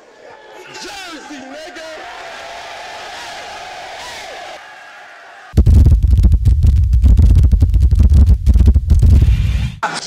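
Crowd voices and shouts mixing together for the first few seconds. About five and a half seconds in, a very loud, bass-heavy logo sting with rapid hard hits cuts in and runs for about four seconds, then stops suddenly.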